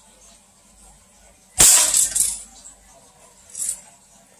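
Plastic Desert Eagle toy BB pistol firing a 0.12 g BB at the bottom of an aluminium drink can from about 5 cm. It makes one sharp crack and metallic hit about one and a half seconds in, followed by a brief clatter. This is the third shot, the one that punches a hole through the can bottom.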